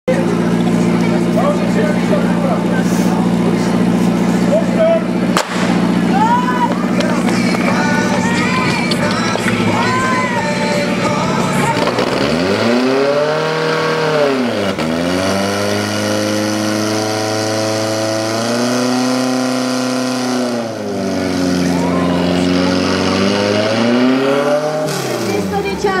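Portable fire pump engine running hard at high revs; about halfway through, its pitch starts dipping and climbing again several times as the throttle is worked during the attack. Short shouts ride over it early on.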